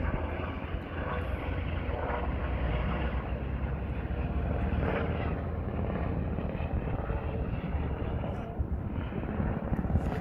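Steady drone of a helicopter in flight.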